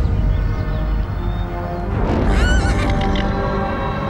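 A horse whinnies once about two seconds in, a short wavering high call, over a dramatic film score that plays throughout.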